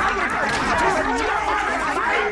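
Several men's voices from German film clips shouting and talking all at once, overlapping into a dense babble with no single voice standing out.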